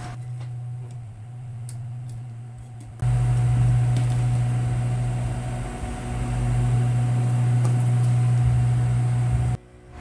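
Industrial sewing machine: its motor hums quietly, then the machine sews steadily, louder, from about three seconds in, stitching piping along a garment edge, and stops abruptly just before the end.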